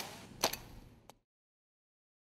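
A sharp double crack about half a second in and a fainter single click about a second in, as the end of the music dies away. Then complete digital silence.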